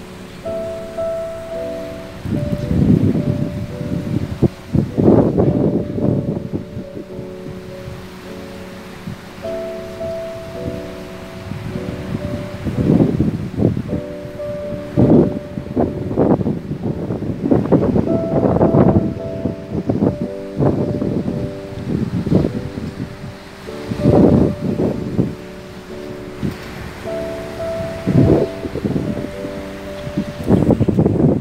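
Background music of held, slowly changing chords, over irregular gusts of wind buffeting the microphone.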